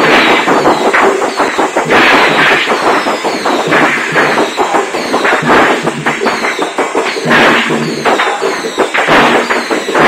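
Strings of firecrackers crackling and banging in a dense, irregular barrage, with steady musical tones from the procession underneath.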